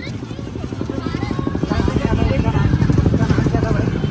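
A motor vehicle's engine passing close by, its rapid pulsing growing louder toward the end, with street voices in the background.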